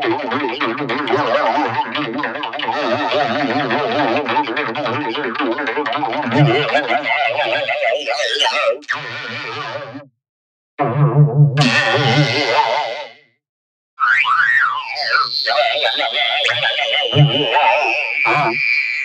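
Voice and music run through heavy audio effects, with a rapid wobble in pitch through the first half. Two short drop-outs to silence come about halfway and about three-quarters through, followed by quick up-and-down pitch glides and a slowly falling tone.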